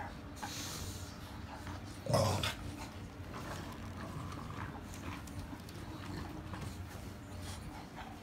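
English bulldog puppies playing tug with a plush snake toy, making low dog noises throughout, with one short, louder dog sound about two seconds in.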